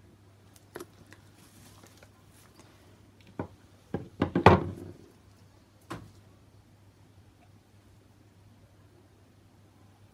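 Handling sounds on a plastic-sheeted worktable as a paint cup with a wooden stirring stick is set down and a painted canvas is turned. There are a few single knocks, and a louder cluster of knocks and scuffs about four to five seconds in.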